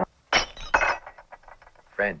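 Porcelain cups clinking: two sharp, ringing clinks about half a second apart, followed by a few fainter ticks.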